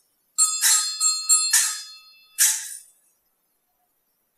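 Altar bells shaken at the elevation of the consecrated host: a quick run of jangling rings in the first two seconds, then one last shake about two and a half seconds in.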